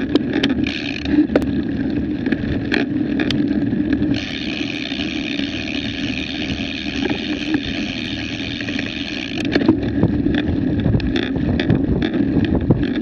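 Wind buffeting an action camera's microphone outdoors: a steady, fluctuating rumbling noise with scattered sharp clicks. A brighter hiss joins it from about four seconds in and stops about nine and a half seconds in.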